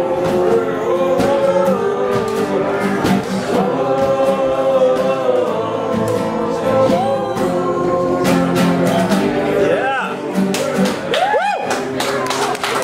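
Live acoustic guitar and sustained, wordless singing, with several voices holding notes together like a small choir. Near the end come two rising-and-falling vocal glides.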